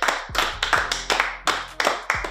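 Two men clapping their hands in applause, a quick run of sharp claps, several a second.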